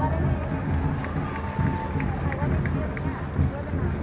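Stadium ambience: a public-address announcer's voice, faint under a steady low rumble of crowd noise.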